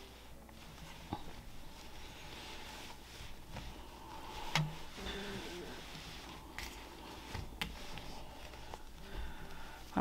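Faint rustling and brushing of a chunky knit cardigan of super bulky wool-acrylic yarn as hands handle it and smooth it flat on a wooden table, with a few soft clicks.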